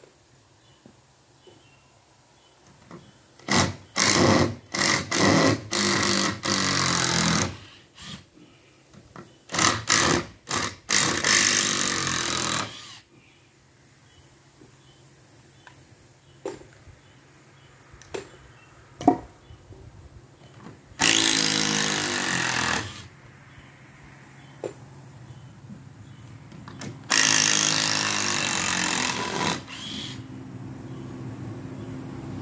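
Power drill driving screws into the wooden framing of a lean-to, in four spells: a few short bursts then a longer run about four seconds in, the same again about ten seconds in, and two steady runs of about two seconds near the end. A few sharp clicks and knocks fall between the runs.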